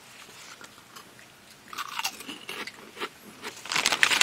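Crunching and chewing of crispy snack chips close to a microphone, sparse at first and loudest in a dense run of crunches near the end.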